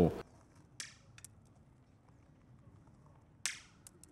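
Sharp metallic knocks on a steel sculpture: one knock followed by two small clicks about a second in, then a louder strike near the end that rings briefly.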